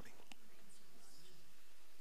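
Pause in speech: steady microphone hiss in a reverberant hall, with a faint echo trailing off after the last spoken word and a small click.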